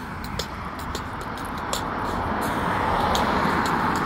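A car passing on the road, its noise swelling steadily louder over a few seconds.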